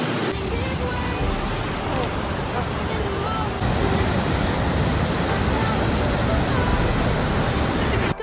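Whitewater of a river cascade rushing over boulders, a steady rushing noise that grows a little louder about three and a half seconds in. A sung pop song plays faintly underneath.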